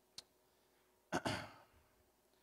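A man sighs, breathing out heavily close to a microphone about a second in, fading over about half a second. Just before, near the start, there is a single small click.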